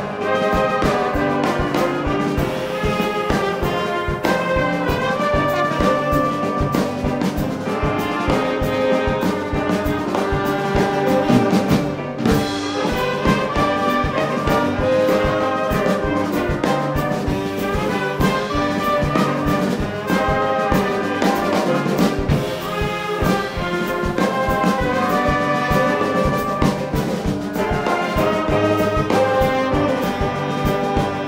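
A junior brass band playing a Middle Eastern pop-styled tune: trumpets, trombones and saxophone over drum kit and piano, with a steady, driving rhythm.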